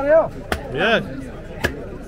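Butcher's cleaver chopping goat meat on a wooden block: two sharp strikes about a second apart, with voices talking between them.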